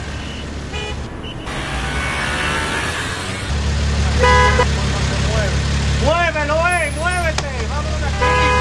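A car horn gives one short honk about halfway through, over a low steady hum, with people's voices around it.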